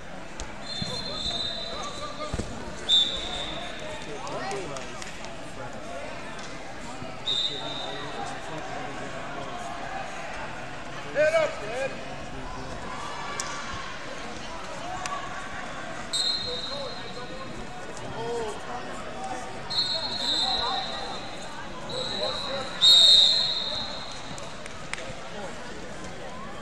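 Wrestling shoes squeaking and scuffing on the mat in a large gym hall, with short high squeaks several times. The loudest squeak comes near the end, over a steady hum of distant voices.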